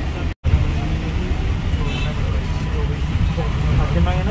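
Steady low rumble of a bus engine and road noise, heard from inside the passenger cabin, with a brief total dropout about half a second in.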